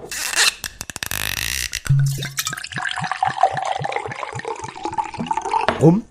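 Liquid poured from a bottle, glugging in a fast, even rhythm of about three to four pulses a second. It follows a few sharp clicks and a short rushing hiss at the start.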